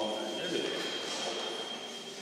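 A steady high-pitched whine over indistinct murmuring voices; the whine stops just before the end.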